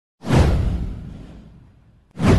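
A whoosh sound effect with a deep low end, sweeping down in pitch. It swells quickly just after the start and fades away over about a second and a half.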